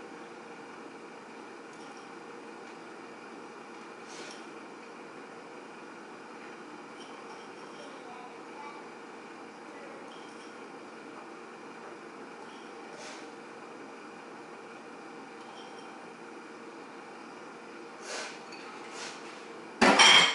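Steady low room hum with a few faint taps and clicks from handling the filling, then a sharp knock at the very end.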